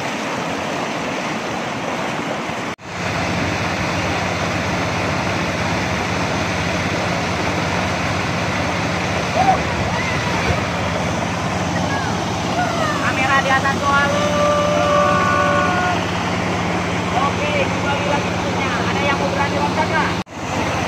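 River rapids rushing, a steady loud noise, with people's voices calling out over it, most around the middle. The sound drops out for a moment about three seconds in.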